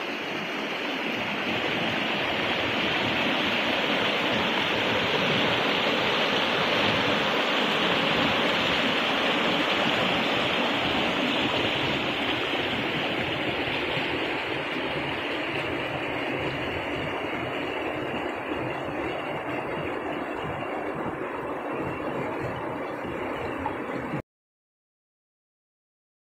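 A river's water rushing steadily over rocks, a little louder in the first half and easing off later.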